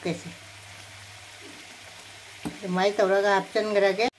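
Water poured into a stainless steel bowl of ground spices, a steady splashing hiss. From about two and a half seconds in, a voice takes over.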